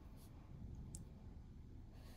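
Near silence: faint room hum with a single soft click about a second in.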